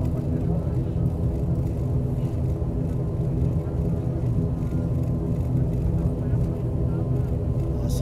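Steady drone of an ATR turboprop airliner's engines and propellers heard inside the cabin while taxiing: a low rumble under a set of even, unchanging propeller tones.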